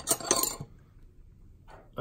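Steel hand tools, a hammer and combination wrenches, clinking against each other in a metal tool-chest drawer: a short, ringing metallic clatter in the first half-second.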